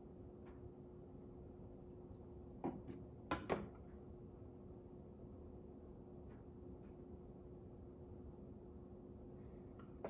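A faint steady hum with a thin tone, and a few light knocks of a glass flask being handled and set down, about three seconds in, during a hand-swirled iodine titration.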